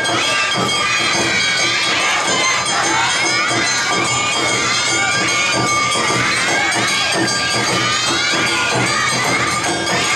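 Awa Odori festival music from a dancing troupe: drums and metallic percussion beating a steady rhythm under many high voices shouting calls together, with crowd noise throughout.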